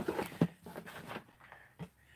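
A few soft clicks and taps, the clearest about half a second in and another near the end, from handling small cosmetic packaging, over faint room noise.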